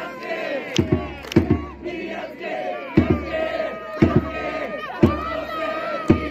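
A baseball cheering section in the stands shouting a chance-theme chant in unison, with loud drum beats roughly once a second and a held horn-like note in the middle.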